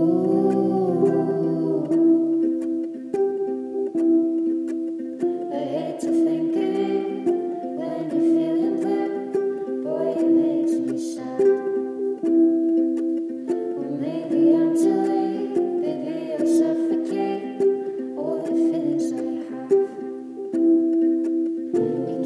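A woman singing a slow love song in phrases with short gaps, over a plucked acoustic string instrument that carries on steadily beneath her; the voice comes in fully about five seconds in.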